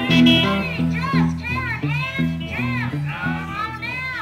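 Four-string cigar box guitar in open E tuning playing a repeated low riff of picked notes, with a high, child-like voice rising and falling over it.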